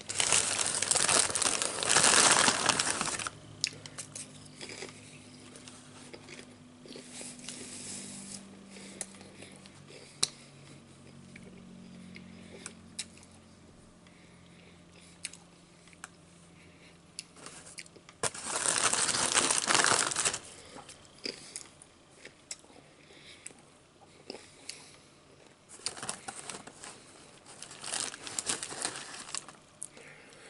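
Crinkling of a Lay's potato chip bag and sandwich wrapper being handled, in three loud stretches: for the first three seconds, again about twenty seconds in, and near the end. Scattered small taps and clicks fall in between.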